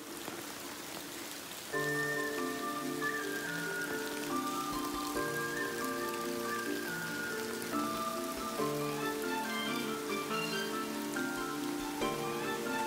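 Steady rain, an even hiss. About two seconds in, background music with a melody of short, steady notes comes in over it and becomes the louder sound.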